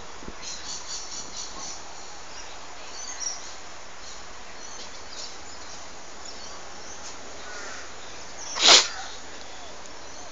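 Birds calling outdoors: a quick run of about seven short, high calls in the first two seconds, then a single brief, loud, sharp burst of sound near the end, over steady background noise.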